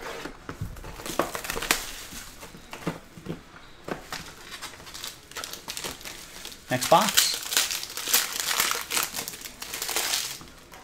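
Plastic shrink wrap and the foil pack wrapper of a 2022 Topps Tier One baseball card box crinkling as hands unwrap it. Scattered crackles give way, about seven seconds in, to a denser, louder stretch of crinkling.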